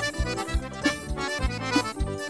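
Accordion-led Brazilian band music, instrumental here: the accordion plays a melody over bass and a steady kick-drum beat.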